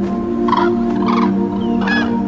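Three short, harsh bird calls from a flock, about one every two-thirds of a second, over sustained ambient music with steady low tones.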